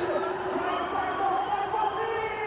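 Stadium crowd cheering a wicket at a T20 cricket match, a steady din with long held notes running through it.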